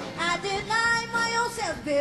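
A woman singing a blues vocal over a live band, holding a note and then sliding down in pitch near the end.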